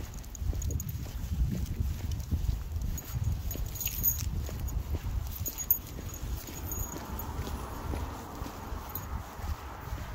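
Footsteps of a person and a leashed dog walking on a concrete sidewalk, irregular small steps over a low, uneven rumble.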